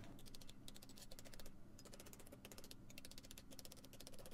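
Faint, rapid, irregular clicking and ticking over a low steady hum.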